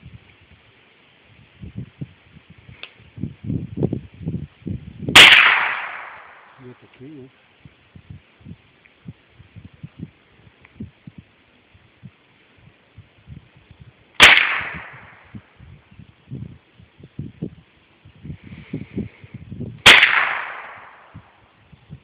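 Three shots from a Marlin Model 60 .22 rifle: sharp cracks about five, fourteen and twenty seconds in, each with a short ringing tail. Faint low knocks lie between them.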